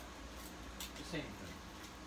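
A man's brief mumbled vocal sound, a short falling murmur about a second in, with a faint click just before it, over quiet room hum.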